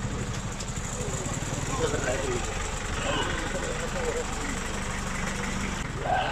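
A motor vehicle engine idling steadily close by, under faint scattered voices.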